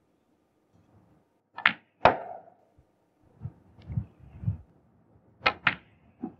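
Snooker balls struck during a break: two sharp clicks about a second and a half in, cue on cue ball and then ball on ball, followed by a few dull low knocks, then another pair of sharp clicks near the end.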